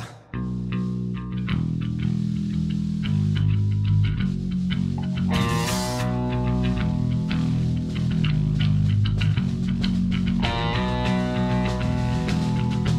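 A live rock trio, with distorted electric guitar, bass guitar and a drum kit, coming in together just after the start and playing a hard, driving instrumental passage. A loud cymbal crash rings out about halfway through.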